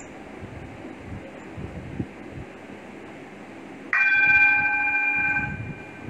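A singing bowl struck once about four seconds in, ringing with several clear overtones for about a second and a half before fading. Before the strike there is only a faint hiss.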